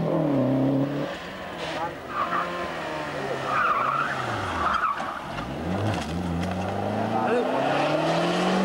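Rally car engines at high revs on a closed stage: one car's note drops away in the first second as it pulls off, then after a quieter stretch the next car's engine rises in pitch as it accelerates in the second half.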